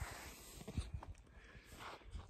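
Quiet outdoor ambience with a few faint, short low thumps.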